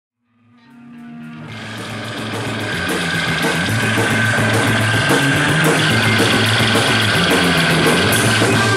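Live prog-punk/noise-rock band playing loud: guitar, bass and drum kit with crashing cymbals. It rises from silence over the first three seconds to full volume.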